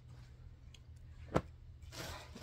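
Garments and a plastic bag being handled: a single sharp click about a second and a half in, then soft rustling near the end, over a low steady hum.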